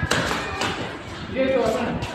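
A shoe stamps on a concrete floor right at the start during a dance step. A person's voice talks without clear words about a second and a half in.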